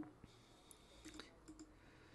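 Near silence with a few faint, scattered clicks from a computer mouse and keyboard.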